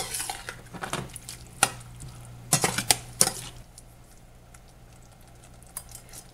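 Metal spoon stirring a thick vegetable sauce in a stainless steel saucepan, scraping and clinking against the pan's sides. The stirring stops after about three and a half seconds, leaving it much quieter.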